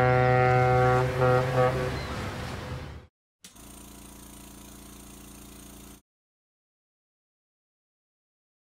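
Ship's horn sound effect: one long low-pitched blast that breaks up briefly and ends about two seconds in, then fades out. A faint steady hum follows, then dead silence from about six seconds.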